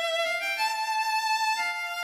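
Background music: a violin melody of held notes that step to a new pitch about every half second.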